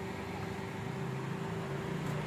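A car engine idling nearby: a steady low hum that holds level throughout, over faint outdoor noise.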